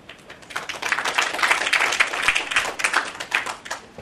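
Audience applauding: clapping builds about half a second in, is fullest through the middle, and thins out near the end.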